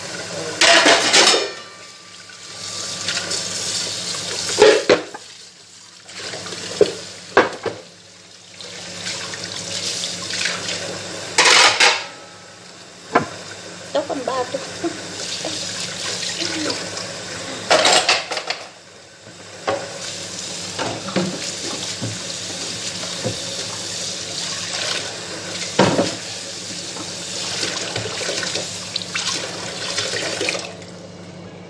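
Kitchen washing-up: a tap running in short bursts of a second or two, with plates, pans and cutlery clinking and clattering in between.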